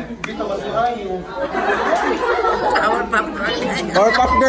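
A group of people talking over one another in a room, several voices overlapping with no one voice clear.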